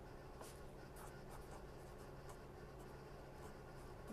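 Faint scratching of writing on paper as an equation is written out, in short irregular strokes, over a low steady room hum.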